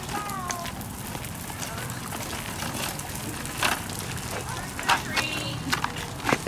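Footsteps on a concrete sidewalk over a steady outdoor hush, with a few sharper knocks in the second half and faint voices of people walking ahead.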